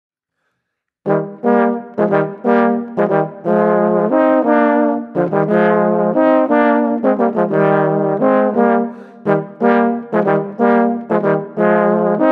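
Two rotary-valve tenor horns playing a Ländler in two-part harmony, in short detached notes, starting about a second in.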